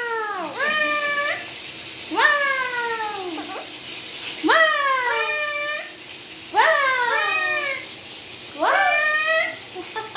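Alexandrine parakeet calling repeatedly: about five drawn-out calls roughly two seconds apart, each sliding down in pitch, several followed by a short upward glide.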